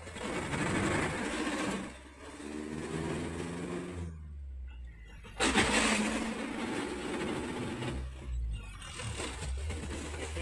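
Truck engine heard from inside the cab while driving: the revs climb, fall away for about a second, then come back in suddenly, as the driver shifts gear.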